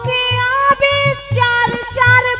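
A woman singing a long, high held note in a folk song, her pitch sliding slightly near the end, over a steady low drum beat.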